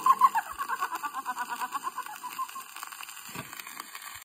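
A woman singer's rapid, high-pitched giggling laugh closing a 1928 novelty record: a quick run of short laugh pulses that trails off and fades.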